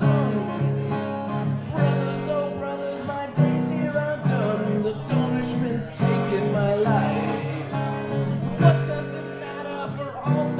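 A man singing to his own acoustic guitar in a live solo performance of a jig-like folk song.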